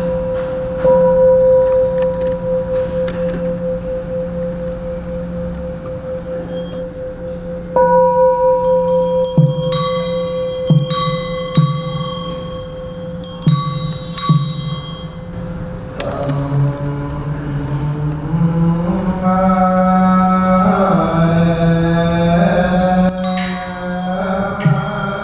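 A large Buddhist bowl bell struck with a wooden mallet, its steady tone ringing on and slowly fading, then struck again about eight seconds in, followed by a run of sharper, brighter strikes. From about sixteen seconds, monks' liturgical chanting takes over.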